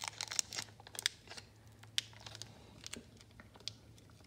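Foil wrapper of a Pokémon booster pack crinkling and crackling in the hands, in quick irregular ticks that are densest in the first second and a half and sparser after. A faint steady low hum runs underneath.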